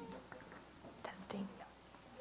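Faint, indistinct voices, whispered or far from the microphone, with a couple of short hissy sounds about a second in.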